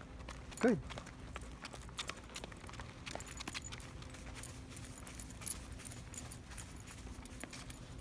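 A dog wearing boots walking on concrete: irregular taps and scuffs from the booties' soles, like small hooves clopping.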